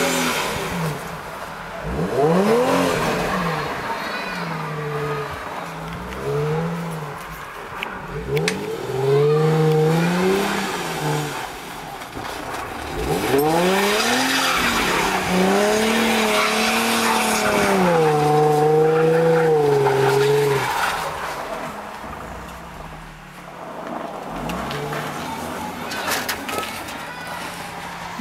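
Infiniti G35 coupe's 3.5-litre V6 revving up and falling back again and again as the car spins its rear tyres and slides on snow. For a few seconds in the middle it holds high revs with a wavering pitch, over the hiss of spinning tyres.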